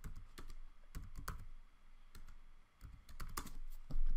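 Typing on a computer keyboard: a few quiet, irregularly spaced key clicks as a word is finished and entered.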